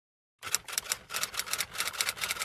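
Typewriter-style key clicking, a quick run of about seven clicks a second starting half a second in: a typing sound effect laid under the on-screen caption.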